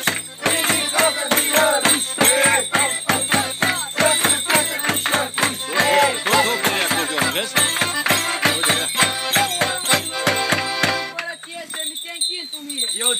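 Traditional Romanian New Year goat-dance music: a drum beating a fast steady rhythm, about four beats a second, with a melody over it and a dry rattling clatter. The music stops abruptly about eleven seconds in.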